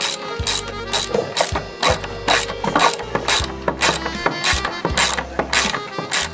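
Ratchet wrench with a socket clicking as it is swung back and forth to turn a bolt set in concrete, the pawl clattering on each return stroke, about twice a second.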